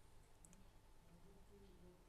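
Near silence: room tone with a faint steady hum and a couple of faint clicks.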